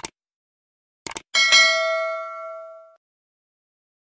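Subscribe-button sound effect: a short click, then a quick double click about a second in, followed by a bright bell ding that rings out and fades over about a second and a half.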